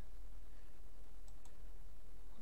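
Two faint computer mouse clicks close together about a second and a half in, over a steady low hum.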